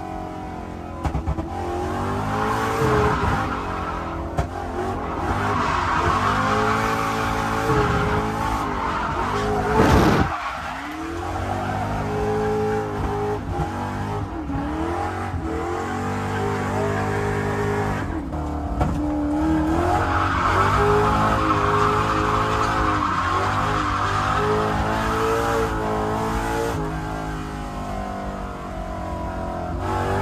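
Lexus SC400 drift car heard from inside the cabin, its engine revving up and down as it slides through the turns, with tyres squealing and skidding. A sharp, loud thump about ten seconds in.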